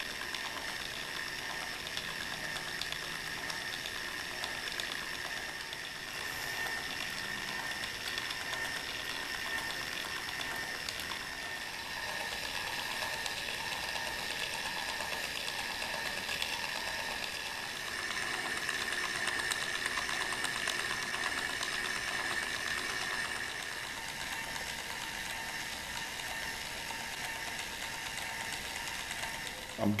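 Motor-driven hinge exerciser running steadily: a small motor turns a wooden crank disc that rocks a small brass hinge back and forth through a model-airplane control rod, giving a steady hum with fine rapid ticking, a little louder for a few seconds past the middle. It is working the stiff hinge with lapping compound to loosen it.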